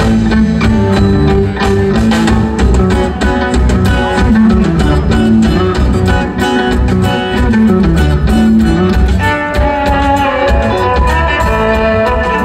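Live instrumental progressive rock band with electric guitar, laouto, violin, bass guitar and drums. Drum hits and a moving bass line run under plucked guitar and lute. About nine seconds in, a higher held melody comes in on top.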